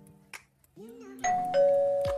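Two-note doorbell-style ding-dong chime sound effect: a higher ding a little over a second in, followed by a lower, louder dong that rings on. Background music with a deep kick drum runs beneath.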